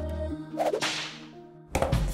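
A swish sound effect for a frisbee flying through the air, a hissy whoosh that sweeps up and fades over about a second, after the background music stops. A sudden sharp hit comes near the end.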